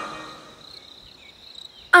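A voice's echo fades out in the first half second, leaving faint crickets chirping steadily as a night-time background in a cartoon.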